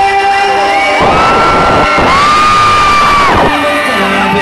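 Live pop concert: music over the PA with a crowd cheering and screaming. About a second in the bass drops out and loud screaming with long, high held cries carries on until shortly before the end, when the music comes back.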